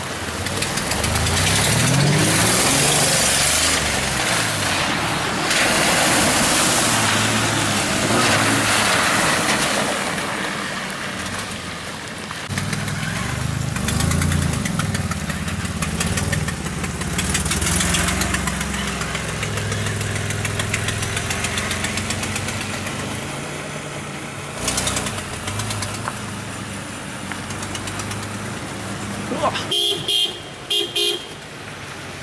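A vehicle engine running and revving, its pitch rising and falling again and again, with tyre and road noise on a wet dirt road. There are a few short, louder bursts near the end.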